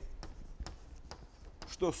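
Chalk writing on a blackboard: a few short, sharp taps and light scratches at irregular intervals as symbols are chalked.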